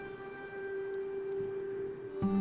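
Soft background music: a single note held steadily, with fainter higher tones above it.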